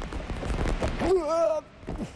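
Thuds and knocks of a person running and jumping onto an inflatable air-bag obstacle course, with a short voiced call about a second in.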